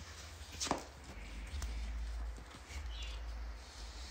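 Quiet handling sounds of paper stickers being peeled from a sheet and pressed onto a cardboard disc: faint rustles and light taps, one sharper tap under a second in, over a low rumble of handling noise.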